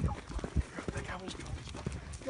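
Quick, irregular footsteps on pavement, a few clicks a second, over a low rumble of phone handling, with faint low voices.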